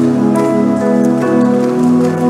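Background worship music of sustained keyboard chords, the notes held and shifting to new chords every half second or so.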